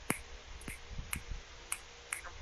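Finger snapping in appreciation: four sharp snaps about half a second apart.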